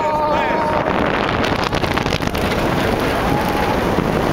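Wind rushing over the microphone of a rider on the Kingda Ka roller coaster, over the steady rumble of the moving train. A rider's held scream carries into the first second.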